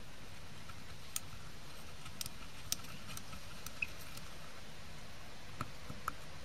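Glass stirring rod clicking against the inside of a small glass beaker while a powder mixture is stirred: about eight sharp, irregular ticks, one with a brief glassy ring.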